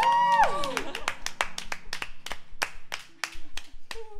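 A few people clapping their hands in a quick, steady rhythm of about five claps a second, thinning out near the end. During the first second a voice holds a note that bends down and fades.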